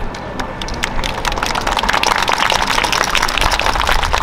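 Applause: a dense, irregular patter of many hand claps that swells about a second in and stays strong.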